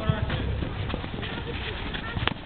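Futsal play on an outdoor court: scattered knocks of players' shoes on the court and the ball being kicked, over a low rumble. Players' voices call out briefly near the start.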